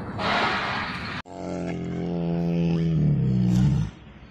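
A big cat roaring: one long, steady call of about two and a half seconds that grows louder and drops in pitch near the end.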